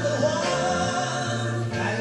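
A man singing a Mandarin song live into a handheld microphone, over steady musical accompaniment.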